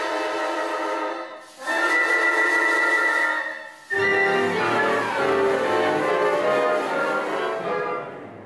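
Symphony orchestra playing classical music with sustained string chords, heard in three short passages with brief breaks about a second and a half and about four seconds in. The last passage is fuller, with low bass added.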